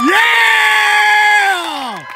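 A spectator's loud, high-pitched yell: one long held call that falls in pitch and fades near the end.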